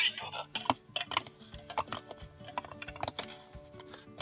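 Hard plastic Ride Watch toys clicking and knocking against their plastic display stands as they are set down and picked up: a string of irregular sharp clicks, over faint background music.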